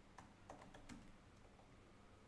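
Faint keystrokes on a computer keyboard: a quick run of about half a dozen taps in the first second, typing a terminal command, then only quiet room tone.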